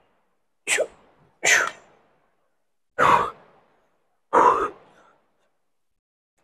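A man's short, forceful breaths, four of them in the first five seconds, each fading out quickly: psyching up before a set on a seated chest press machine.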